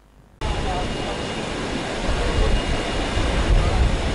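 Wastewater gushing from a pipe and splashing into a foamy drainage channel: a steady rushing noise with a deep rumble. It starts abruptly about half a second in.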